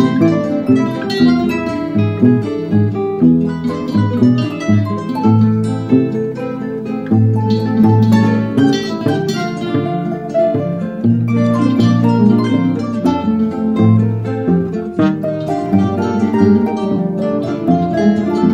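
Classical guitar ensemble of nylon-string guitars, with a harp, playing a piece together: many plucked notes and chords overlapping, with a moving bass line.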